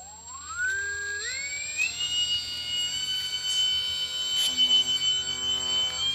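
Small brushless electric motor driving a propeller on a foam-board air sled, spooling up. Its whine climbs in steps over the first two seconds, then holds at a steady high pitch.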